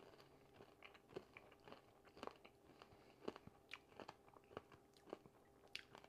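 Faint crunching of caramel popcorn being chewed. The coating is slightly burnt and crisp. Irregular soft crunches come about once or twice a second.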